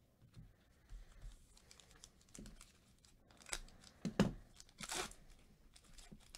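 Foil wrapper of a Panini Illusions football card pack crinkling and tearing as it is ripped open by hand, in short scattered bursts that get louder in the second half.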